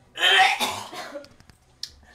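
A woman retching into a toilet bowl: one loud gagging heave just after the start that trails off over about a second, followed by a brief sharp click near the end.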